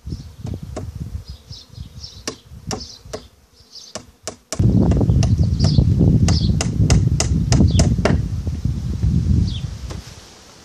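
A hammer tapping small nails into the wooden frames of a beehive swarm trap: a few spaced taps at first, then a quick run of taps in the second half. A steady low hum grows loud about halfway through.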